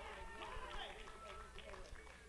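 Faint voices of a church congregation calling out in a pause of the preaching.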